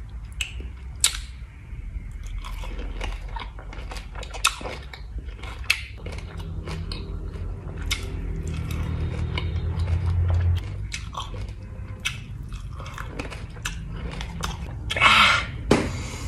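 Close-miked biting and chewing of a whole lemon on a skewer, with many sharp wet mouth clicks. A short, louder rustling noise comes near the end.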